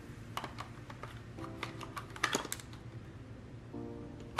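Light plastic clicks and knocks from the Eufy RoboVac 11+'s parts as the rolling-brush housing is handled and fitted back into the robot vacuum's chassis, a handful of them scattered over a few seconds, over soft background music.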